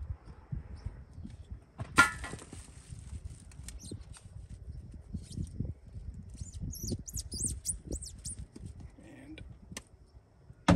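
Hand work on a fuel line: a screwdriver loosening a hose clamp and a rubber hose section being twisted and pulled off a steel fuel line, with scattered light clicks, one sharp ringing clink about two seconds in, and short high squeaks around seven to eight seconds. A low wind rumble on the microphone runs underneath.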